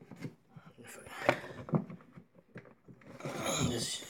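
Hands fumbling at the plastic battery compartment of a Ryobi 40-volt cordless mower, feeling for the battery release: scattered clicks and knocks, the sharpest a little over a second in, then rubbing and handling noise near the end.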